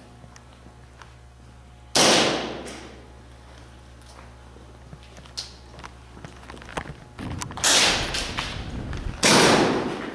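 Three loud, sudden bangs echoing in a large indoor hall during airsoft play: one about two seconds in that fades over nearly a second, and two close together near the end, with scattered faint clicks between.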